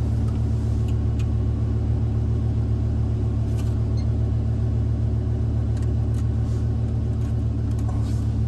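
Lamborghini sports car engine running steadily at low revs, heard from inside the cabin as an even, low rumble with no revving.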